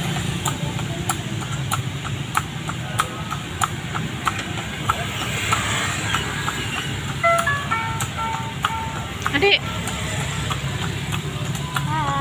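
A horse's hooves clopping in irregular strikes on the paved road as it pulls a cart, over a steady low rumble of the moving cart and street.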